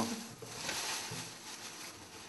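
A hand rummaging through paper entry slips in a wooden chest: soft, irregular rustling of paper.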